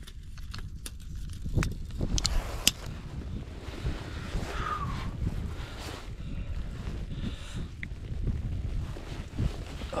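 Wind buffeting the microphone, with a steady low rumble, and a few sharp clicks of handling about two seconds in.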